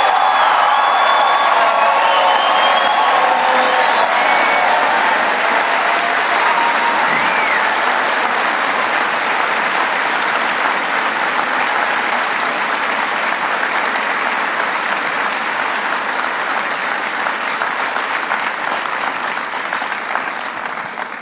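A large crowd applauding steadily, with cheers and shouts over the clapping in the first few seconds, the applause easing off a little toward the end.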